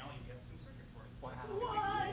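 Faint speech at first. Then, from a little past the middle, a drawn-out, wavering voice sound swells up: the start of an audience reaction.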